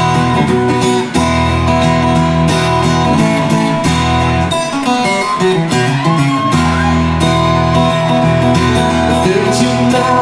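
Acoustic guitar strumming chords as an instrumental song intro, steady and loud, with a short picked phrase in place of the strumming about halfway through before the chords come back.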